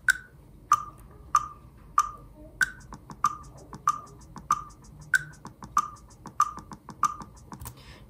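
Drum-practice web app playing back through computer audio: metronome clicks at 95 BPM, about one and a half a second, with a higher accented click on every fourth beat. Fainter kick drum and snare ghost-note hits fall between the clicks in a lightly swung rhythm.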